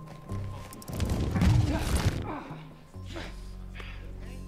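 TV episode soundtrack: low sustained music with a loud, noisy hit-like sound effect that swells about a second in and dies away about a second later.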